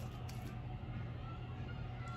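Faint sounds of a spoon stirring thick gram-flour vegetable batter in a glass bowl, with a few soft clicks just after the start, over a steady low hum.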